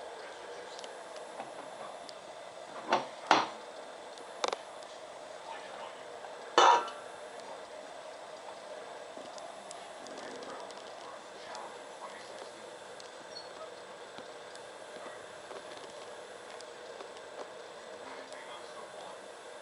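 Spatula and bowls clinking and knocking: a white mixing bowl and a stainless-steel mixing bowl with a scraping spatula, four short clinks in the first seven seconds, the last the loudest. Low steady room sound between them.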